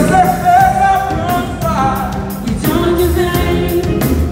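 Live soul band playing: several sung voices carry a gliding melody over bass, electric guitar and a steady drum-kit beat, as heard from on the stage.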